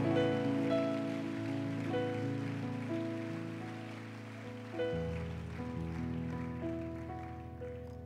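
Sustained chords on a church keyboard, held and changing roughly every second, with a deeper bass note coming in about five seconds in.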